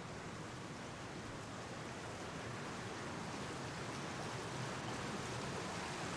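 Steady rush of water running out of a fish-ladder pool as it is drained, growing slightly louder over the few seconds.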